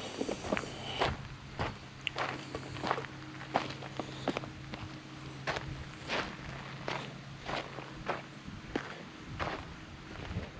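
Footsteps walking on a dirt and rock trail, a steady step roughly every half second.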